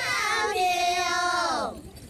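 Title-sequence music: a high, wordless sung note held as one long tone over layered voices, sliding down in pitch and breaking off near the end.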